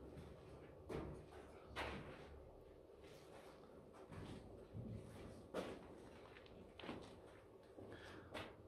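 A few faint, short knocks spaced a few seconds apart over a quiet background.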